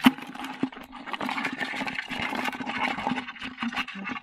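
Live freshwater crabs scrabbling and clattering against the sides of a plastic bucket as one more is dropped in: a dense, continuous rattle of small clicks and scrapes over a steady low hum.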